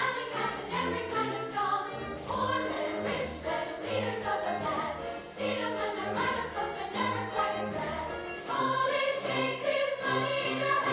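A pit orchestra with brass plays a rhythmic accompaniment under a choir and ensemble singing.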